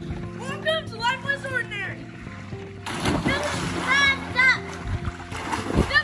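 Children's high-pitched voices shouting over background music with a steady beat, and a splash near the end as a child jumps into a swimming pool.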